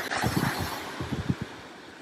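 Wind buffeting the microphone in irregular low gusts over the hiss of small waves washing onto the beach, fading toward the end.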